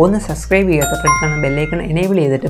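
A subscribe-button sound effect: a bell-like chime starts about a second in and rings for under a second, over a man's voice.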